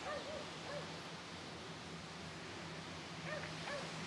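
Faint, short animal calls: a few brief rising-and-falling yelps near the start and again near the end, over a steady hiss of surf.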